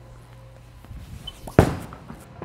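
A bowler's steps on the approach, then one loud thud about one and a half seconds in as the bowling ball is released onto the lane, followed by the start of its roll.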